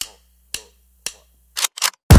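Five short, sharp clicks with near silence between, roughly half a second apart at first and the last two closer together, over a faint low hum: sound effects of an animated title graphic.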